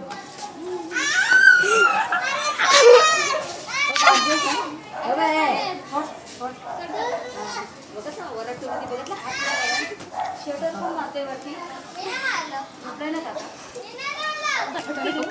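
Boys shouting and laughing in high voices, loudest in the first few seconds, with talking in between.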